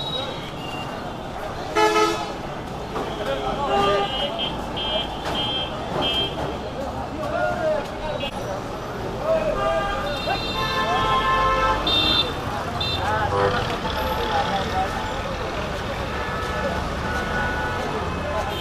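Busy street ambience: vehicle horns honking over traffic noise and people talking. One loud honk comes about two seconds in, and a cluster of horns sounds around ten to thirteen seconds in.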